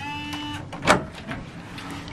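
Hotel room's electronic key-card door lock giving one short beep, about half a second long, then a sharp click a little under a second in as the door is unlatched.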